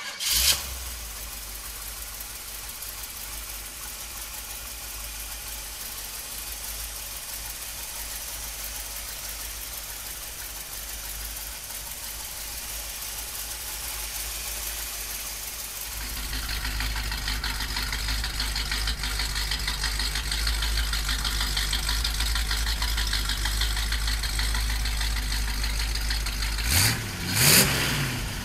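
Small-block Chevy V8 with headers, idling steadily. About halfway through it grows louder and fuller, and near the end there are two brief louder bursts.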